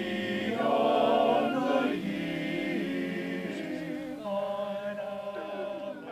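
Men's chorus singing a cappella, several voices in harmony on long held chords that change every second or two.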